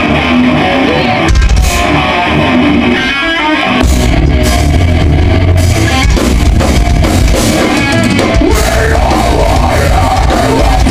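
Thrash metal band playing live and loud: distorted electric guitars and a drum kit. The heavy low end cuts in and out over the first few seconds, then the full band plays steadily from about four seconds in.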